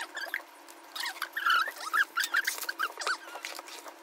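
Cardboard drone box being opened by hand: the tight lid slides off with a run of short squeaks and crackles, busiest in the middle.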